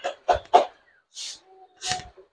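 A man breathing hard and out of breath, a run of short, noisy breaths close to the microphone, one every half second or so.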